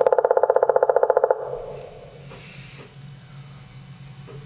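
Recording of an ivory-billed woodpecker played back: a rapid, even run of pitched pulses, about thirteen a second, lasting just over a second and cutting off with a short echo. A low steady hum follows.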